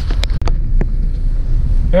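Steady low rumble of engine and road noise inside an Opel car's cabin, with a few short clicks in the first second.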